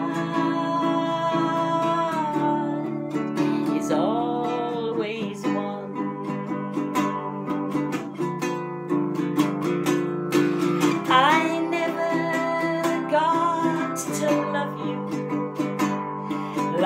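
Ukulele strummed in a slow song accompaniment, with a singing voice coming in over it at moments.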